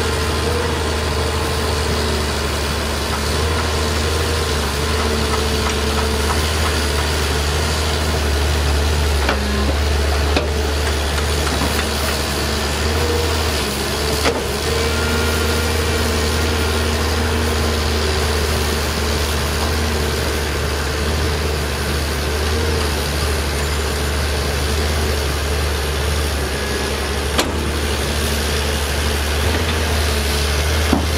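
Diesel engine of a Zoomlion crawler excavator running steadily as it digs and swings rock, its pitch wavering a little with the load, with a few short knocks scattered through.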